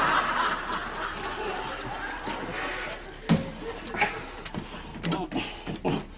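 Studio audience laughing, loudest at the start and easing off after about a second, with a few sharp knocks in the second half, the loudest about three seconds in.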